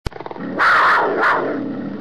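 A lion roaring: a short pulsing growl, then a loud roar that surges twice and tapers off.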